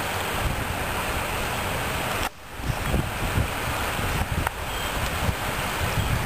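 Ocean water washing around a pier pylon, a steady rushing noise, with wind rumbling on the microphone. The sound drops out briefly a little over two seconds in.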